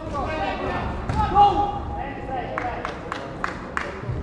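Shouting voices at an amateur boxing bout, loudest about a second and a half in. Near the end comes a quick run of about five sharp smacks as the boxers exchange in the ring.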